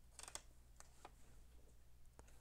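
Near silence, with a few faint clicks in the first second from a vinyl sticker sheet being handled over a diecast toy car body.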